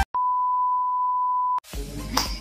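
A single steady electronic beep, one pure tone held for about a second and a half, starting just as the music cuts off and stopping abruptly.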